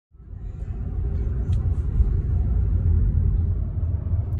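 Steady low rumble of a car's engine and road noise heard from inside the cabin while driving, fading in over the first second.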